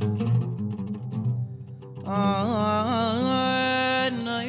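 A live Yemenite groove band: low plucked oud notes with light hand-percussion strokes, then, about halfway through, a male voice comes in singing a long ornamented, melismatic line that ends on a held note.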